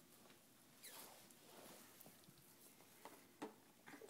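Near silence: room tone with a few faint, short scratches and taps, the loudest about a second in and a couple more near the end.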